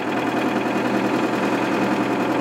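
Diesel engine of a front loader running steadily while it tips a bucket of snow into a dump truck.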